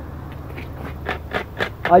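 Steady low outdoor background noise with a run of short, sharp clicks, about four or five a second, before a man's voice starts near the end.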